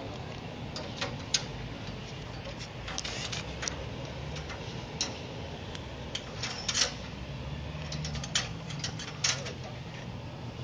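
Scattered metallic clicks and clinks of carabiners and clip hardware on a lifting platform's cage being handled, a dozen or so at irregular intervals, over a low steady hum.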